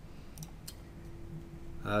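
Two faint, short clicks over quiet room tone, followed by a man's hesitant "uh" near the end.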